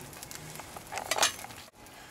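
A few light clicks of metal tongs against the grill grate and serving tray, over a faint sizzle from seafood cooking on the grill.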